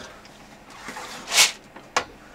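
Handling noise as heavy lead-ballast jerrycans are moved on a boat's floor: a brief rustling swell, then a single sharp knock near the end.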